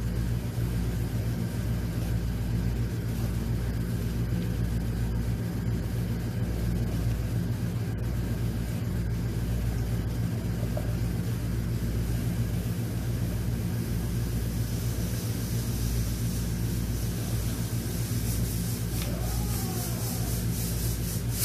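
A steady low hum or rumble, like a motor running, holding an even level throughout.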